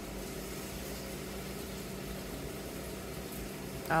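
A steady mechanical hum with a faint, even hiss, unchanging throughout.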